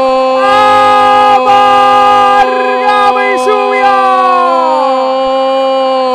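A radio football commentator's long, unbroken goal cry, 'gol' held on one high steady note for the whole stretch, celebrating a goal.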